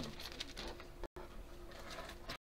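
Paper pages of Bibles rustling and being turned as the passage is looked up. The recording cuts out completely for a moment just after a second in.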